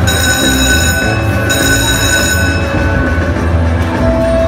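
Buffalo Gold slot machine's bonus music with a high, held ringing chime. The chime breaks off briefly after about a second and stops a little past halfway. It marks the free-games bonus being retriggered and more free games being added.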